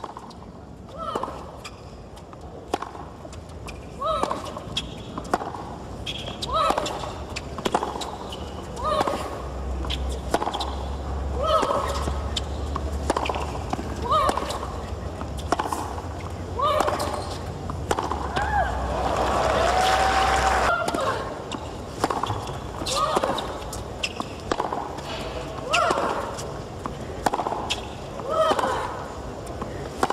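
Tennis rallies: racket strikes on the ball about every second, most of them paired with a player's short cry on the shot. About two-thirds of the way through, crowd noise swells briefly.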